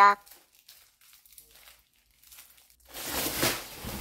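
Plastic packaging being handled, crinkling and rustling: faint scattered crinkles at first, then a louder stretch of rustling starting about three seconds in.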